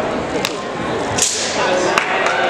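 Movement sounds from a southern broadsword (nandao) routine: a sharp crack about half a second in, then a swish about a second later as the athlete spins and drops into a low stance.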